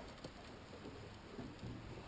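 Faint, steady outdoor background noise with no distinct sound standing out.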